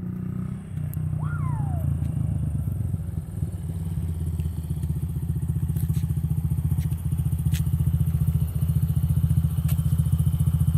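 Small single-cylinder four-stroke engine of a Honda 50cc kids' dirt bike running, getting louder as the bike comes closer over the first few seconds, then running steadily close by with an even putt-putt rhythm.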